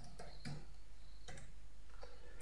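A few computer keyboard keystrokes, short clicks unevenly spaced, as a word is typed.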